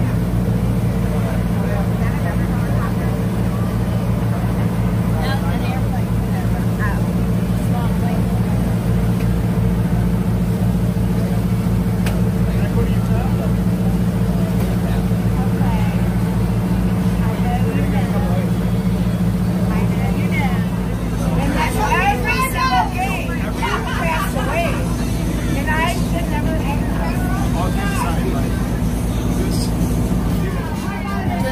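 Boat's engine running at a steady drone under way, its note shifting slightly about two-thirds of the way through. Voices talk over it near the end.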